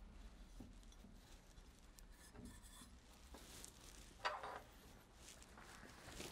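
Near silence with faint rubbing from hands handling stainless steel pump parts; about four seconds in, one short knock as a part is set down.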